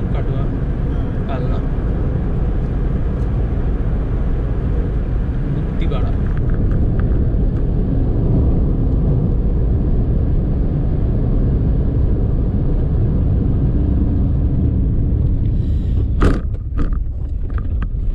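Steady low road and engine rumble inside a moving car's cabin. About sixteen seconds in come a few sharp knocks and rattles as the car reaches a rough, broken road surface.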